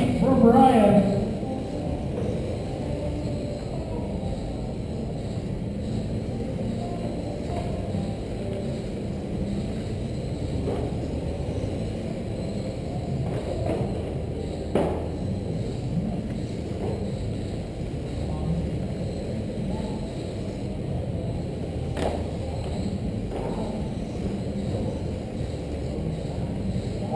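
Steady hall ambience of 1/10-scale radio-controlled race cars running laps on a carpet track: a constant drone of motors and tyres with faint background chatter, and two sharp knocks, one about halfway through and one later.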